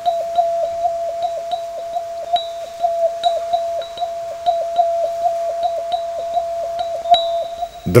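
Background synthesizer music: one held electronic note with short blips pulsing on it, about three a second.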